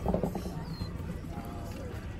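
A short burst of a girl's voice right at the start and fainter voices about a second later, over a steady low outdoor rumble.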